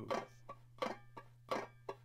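Banjo strings, choked by the left hand, played in the basic clawhammer stroke. A fingernail brushes down across the strings, then the thumb sounds a string as the hand lifts. The result is short, clipped strokes, about three a second, alternating strong and light.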